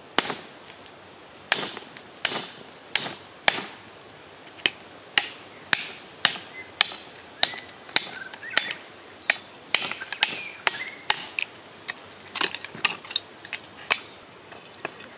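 A cleaver chopping again and again into a giant sea snail's thin shell on a wooden chopping block, cracking it apart: sharp strikes about every half second, coming a little faster near the end.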